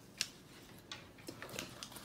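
A few faint, light clicks and taps of a plastic ruler against plastic plant pots as it is moved and set against a seedling, the sharpest about a quarter second in.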